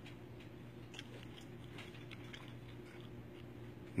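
Quiet room tone: a faint steady hum with a few soft scattered clicks.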